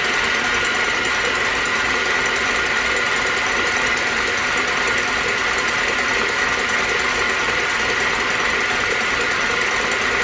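Electric stand mixer running at raised speed, its wire whisk beating egg whites in a stainless steel bowl: a steady motor whir with a high whine. The whites are foaming up on their way to stiff meringue peaks.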